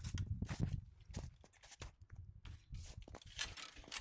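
Irregular faint clicks and rustling of pruning cuts being made as the top of a Honeycrisp apple tree is shortened.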